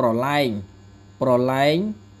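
Speech: a man slowly pronouncing two Khmer words, each drawn out for over half a second, over a steady low mains hum.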